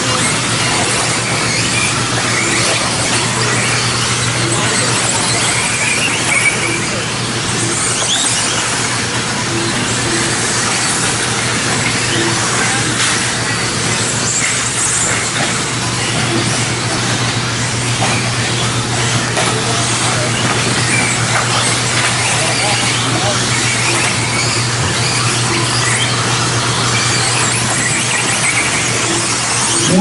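Several 1/10-scale electric 2WD modified buggies racing together: a steady, loud high-pitched whine of motors and tyres that swells and fades as cars pass and accelerate.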